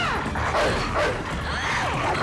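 Film soundtrack of a dog attack: crashing and banging under a music score, with pitched cries that rise and fall, one near the start and another near the end.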